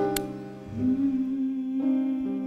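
Keyboard playing held chords as an introduction to a song, the notes changing twice. A short sharp click sounds just after the start.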